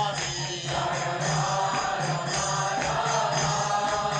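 Devotional music: chanted singing over a steady low drone, with light percussion.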